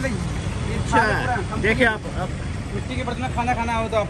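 People talking, with a steady low rumble underneath.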